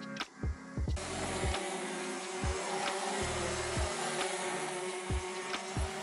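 Background music with a steady beat; from about a second in, a pack of two-stroke racing kart engines running is heard under it.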